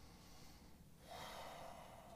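Near silence, then a faint breath drawn in by a man close to a microphone, starting about halfway through and lasting just under a second.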